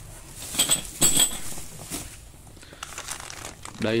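Clear plastic bag of spark plug caps crinkling as it is picked up and handled, with the loudest rustles about half a second to a second and a half in.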